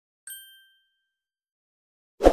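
A single bright ding, a bell-like chime added as an editing sound effect, struck about a quarter second in and fading away within half a second.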